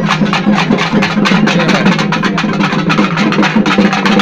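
Loud temple-festival drumming: rapid, dense drumbeats over a steady low hum.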